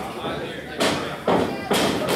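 Wrestling strikes landing in the ring: a few loud thumps in the second half, with voices from the crowd around them.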